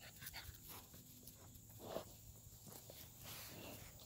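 Faint sounds of American Bully puppies moving about in grass: scattered small clicks and rustles, with one louder short dog sound about two seconds in.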